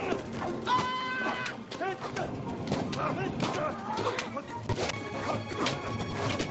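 Film soundtrack of a comedy fight scene played over a video call: music under shouts and laughter, with several sharp hits and crashes.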